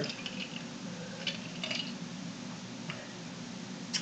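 A man sipping a whisky cocktail from a glass and swallowing: faint mouth and sip sounds with a few soft clicks over a steady low room hum.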